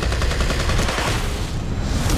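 Rapid gunfire: a string of shots fired close together over a deep, continuous rumble.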